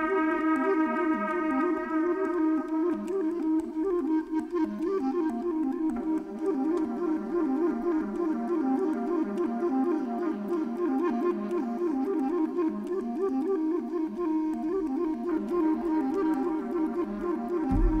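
Improvised jazz on woodwinds: a held note rich in overtones at the start, then quick fluttering runs of notes in the lower-middle range. A deep low note comes in right at the end.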